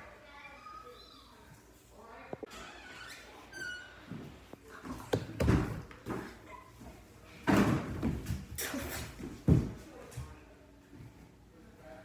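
Several sudden heavy thumps and bangs in a room, bunched between about five and ten seconds in, the last one the loudest, with faint voices in the background before them.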